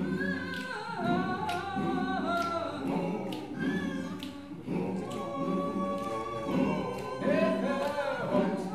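Mixed-voice choir singing a cappella, holding chords in several parts that move from note to note.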